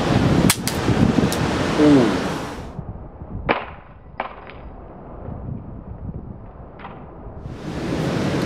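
Samsung Galaxy Note 1 hitting concrete face-down after a drop of about five feet: a sharp clack about half a second in with a smaller knock right after, over a steady background rush. The impact knocks the phone's back cover off. After about two and a half seconds the background drops away and three more separate sharp clacks follow, spaced out, as the phone and its loose back cover strike and bounce on the concrete.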